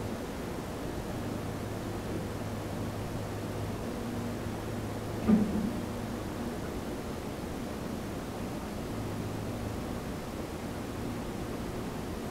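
Steady room tone: a hiss with a low hum that fades in and out. One short, louder sound, with a little pitch to it, about five seconds in.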